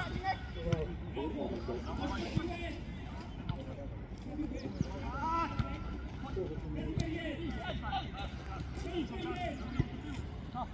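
Players' shouts carrying across an open football pitch over a steady outdoor hum, with a few short sharp knocks of the ball being kicked.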